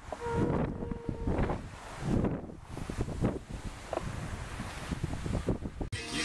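Wind buffeting the microphone, with uneven rustling and bumps, and a brief steady tone about half a second in.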